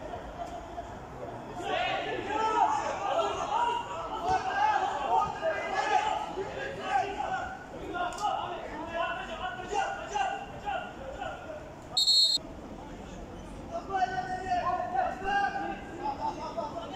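Voices calling and chattering around a football pitch, with one short, sharp referee's whistle blast about twelve seconds in.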